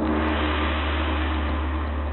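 A gong struck once, ringing loud and slowly dying away.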